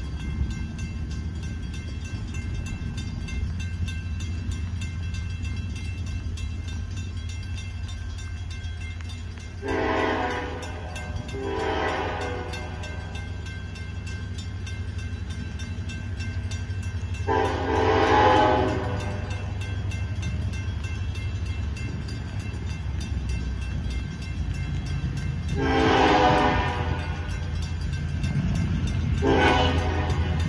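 Diesel locomotive LI 168 approaching with a steady low rumble, sounding its horn five times. Two blasts of about a second each come a third of the way in, then a longer one past halfway, another long one later, and a short one at the very end.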